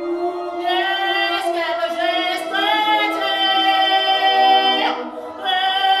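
A woman singing long held notes over steady electronic sound, the voice changing pitch every second or so. The sound dips briefly about five seconds in, then comes back.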